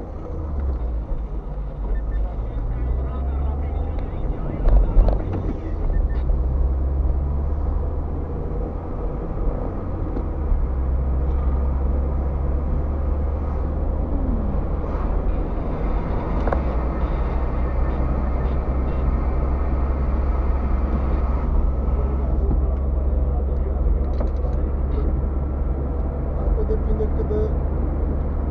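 Steady low rumble of a moving car's engine and tyres on the road, heard from inside the cabin, growing a little louder after the first few seconds.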